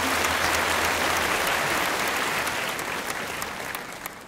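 Audience applauding after a song ends, the clapping dying away gradually toward the end.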